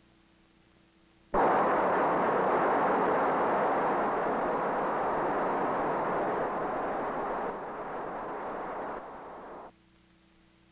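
A 16,000-pound-thrust rocket motor firing as a Marlin test missile leaves the water and climbs. A loud rushing noise starts suddenly about a second in and holds steady. It then drops in steps and cuts off abruptly near the end.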